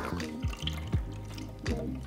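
Beaten raw eggs being scooped from a steel mixing bowl and poured from a measuring pitcher, the liquid splashing and dripping, under background music.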